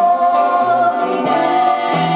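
Gospel singing played from a vinyl LP record: voices holding long notes that change pitch every half second or so.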